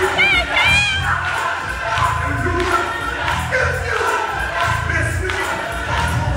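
Gospel choir singing with band accompaniment over a steady low beat, with the congregation's voices and cheers mixed in. In the first second a single high voice wavers out above the rest.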